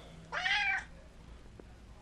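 Domestic cat meowing once, a short call lasting about half a second.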